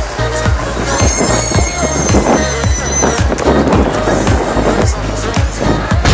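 Background music with a steady, evenly spaced drum beat, about three beats a second, and a high held tone from about one to three seconds in.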